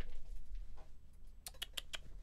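Computer keyboard keys clicking: a few faint clicks, then a quick run of about five near the end.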